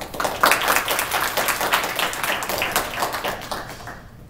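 Audience applauding, many hands clapping at once. It swells within the first half second, then tapers off gradually and stops near the end.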